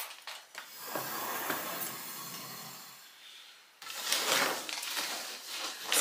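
Thin wooden strips and objects being handled and shifted about on a wooden tabletop: light knocks and rubbing, with a brief lull a little past halfway.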